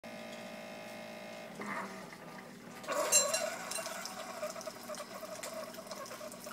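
Single-serve pod coffee maker brewing: a steady hum from the machine at first, then about three seconds in a sudden hiss and sputter as coffee starts running into the mug, carrying on as a steady pouring stream.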